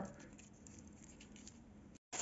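Near silence, with a few faint rustles of paper wrapping being handled around a small metal spring bar tool.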